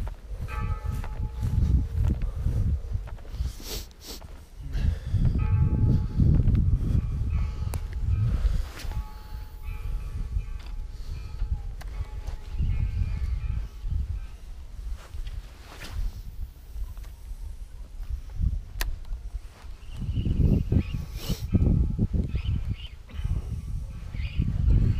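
Wind buffeting the microphone in uneven gusts, with footsteps on a grassy path at the start. Faint steady ringing tones come and go in several stretches, with a few sharp clicks.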